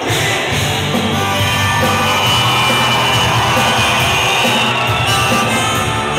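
Live rock band playing, with drums and cymbals, loud and steady.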